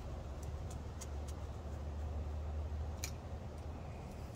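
Needle-nose pliers clicking on the metal spade terminals of an air compressor motor's start capacitor as its wire connectors are worked off: a few light ticks, the sharpest about three seconds in, over a low steady background rumble.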